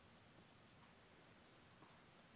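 Faint scratching of a graphite pencil drawing a light line on paper, in short strokes.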